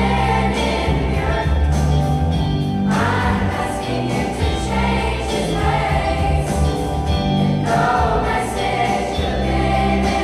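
A youth choir singing over an instrumental accompaniment with a sustained bass line.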